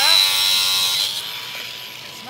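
Angle grinder with a cutting disc cutting through a tile: a loud grinding whine with a steady high tone, which stops about a second in.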